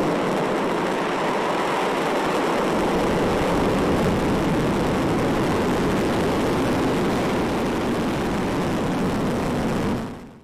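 A Long March 3B rocket lifting off: the steady, loud noise of its first-stage and strap-on booster engines, an even rush with no pitched tone, holding constant in level throughout.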